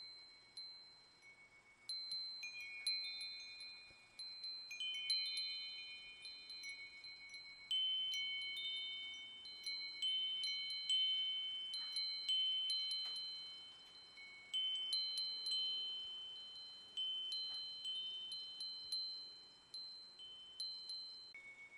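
Wind chimes ringing: a few high, clear metal tones struck at irregular intervals, each ringing on and overlapping the next.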